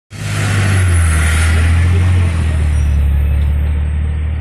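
Steady low drone of a motor vehicle's engine with road noise and hiss over it.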